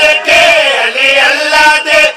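A man's voice chanting a devotional qasida into a microphone, in long sung lines that bend up and down in pitch.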